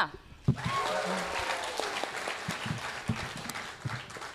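Audience applauding, with a few voices mixed in; the clapping starts about half a second in and fades near the end.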